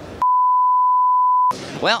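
Censor bleep: one steady pure beep lasting about a second and a quarter, laid over the sound track with everything else muted under it. Laughter comes in right after it, near the end.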